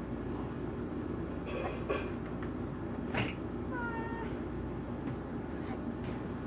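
Steady low hum of a window air conditioner, with a sharp click about three seconds in and a short, high mewing call falling slightly in pitch about a second later.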